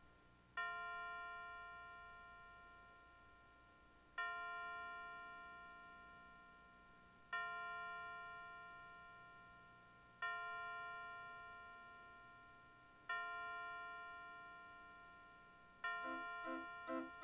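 A church bell tolling, struck six times about three seconds apart, each stroke ringing out on the same note and slowly fading.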